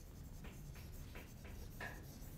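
Chalk writing on a blackboard: a series of faint, short strokes as a word is written out.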